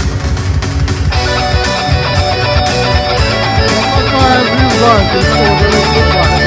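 Electric guitar played loud through an amplifier, in a heavy rock style over a backing with a steady beat. About a second in, a lead melody starts, with string bends sliding up and down in pitch.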